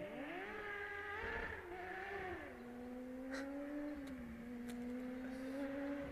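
A vehicle engine running, its pitch rising briefly at the start, holding, then settling lower about two and a half seconds in and running steadily, with a couple of faint clicks.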